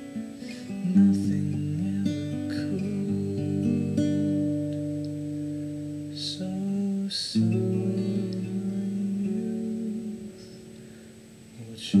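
Acoustic guitar playing chords, each left ringing before the next, changing every second or two. It sinks lower about ten seconds in, then a fresh chord comes in loud at the very end.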